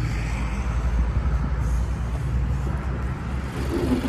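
Four-cylinder engine of a 2017 Holden Astra idling, a steady low hum.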